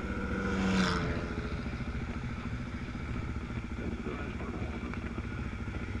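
Motorcycle engines idling steadily, a low pulsing rumble.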